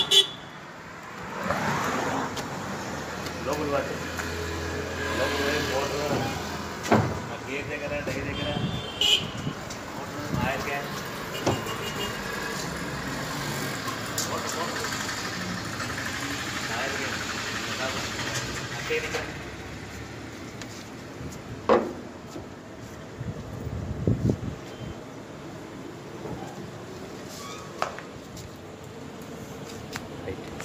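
Outdoor street noise: road vehicles running and people talking in the background, with occasional sharp knocks.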